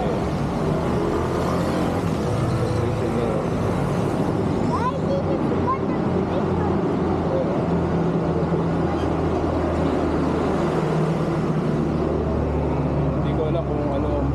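Street noise: a steady low rumble of road traffic, with faint voices now and then.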